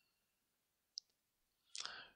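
Near silence with a single faint click about a second in, then a brief sound from the lecturer's voice near the end.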